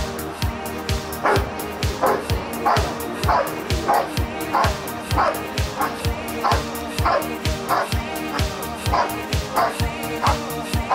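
Dog barking repeatedly at a hiding blind, about one and a half barks a second, starting a second or so in: the bark-and-hold that signals it has found the hidden decoy in protection work. A pop song with a steady beat plays throughout.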